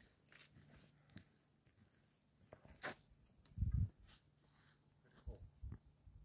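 Faint footsteps on a dirt trail: a few soft low thuds at uneven intervals, with a light click about three seconds in and a faint steady hum underneath.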